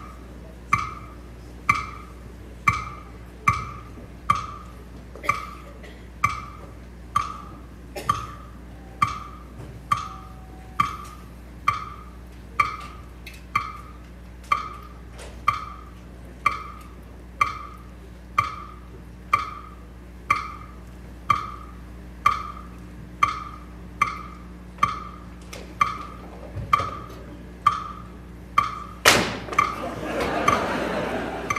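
A steady, evenly spaced ticking like a clock, about three short pitched ticks every two seconds. Near the end a loud sudden crash breaks in, followed by a rush of noise.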